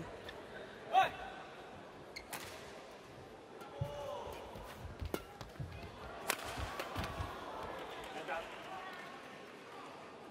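Badminton rally: racket strings striking a shuttlecock, a sharp crack roughly every second, with faint voices in the hall between hits.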